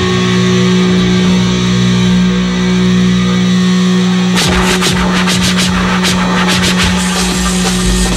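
Metal band playing live at high volume: a low, steady droning guitar note is held, then a little over four seconds in the drums and cymbals come in with a quick run of hits.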